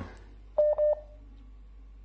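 Two short electronic beeps at one steady pitch, close together, about half a second in, with a faint trailing tone, heard over the phone line.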